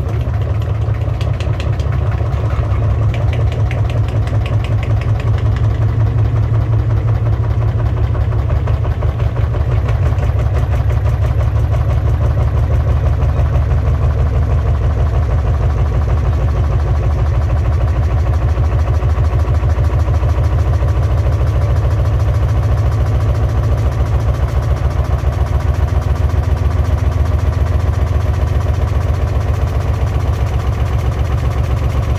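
Beko Aquatech front-loading washing machine spinning its drum at speed with the door open, tumbling a heavy hoodie: a loud, steady motor-and-drum rumble with a fast, even pulsing. The sound grows a little louder about ten seconds in.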